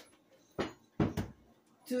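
Kitchen items handled on a countertop: a sharp click at the start, a knock about half a second in, then two quick knocks about a second in.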